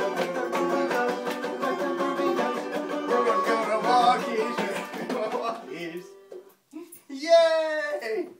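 Five-string banjo picked rapidly in a bright, ringing run of notes that fades out about six seconds in. Near the end comes one short, loud voice-like cry that falls in pitch.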